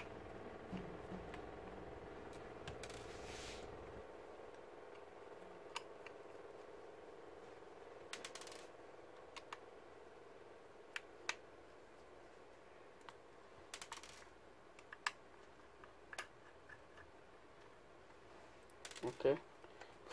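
Faint, scattered small metallic clicks and taps as a screwdriver works the screws out of a laptop hard drive's metal caddy and the screws and caddy are handled. A low steady hum fades out about four seconds in.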